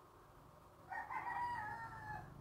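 A single faint, drawn-out animal call in the background, about a second long, starting about a second in.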